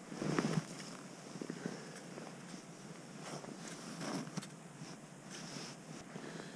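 Mostly quiet, with soft handling and rustling noise from the angler's clothing and gear: a brief muffled bump about half a second in, then a few faint scuffs.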